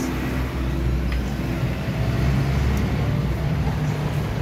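An engine running steadily with an even, low drone.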